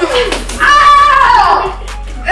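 A boy's high-pitched, drawn-out wordless cry, sliding down in pitch over about a second.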